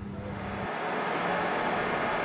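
A steady low motor hum that cuts off abruptly about two-thirds of a second in, leaving an even rushing noise on the water.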